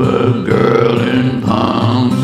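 A man singing a held, gliding vocal line over strummed acoustic guitar.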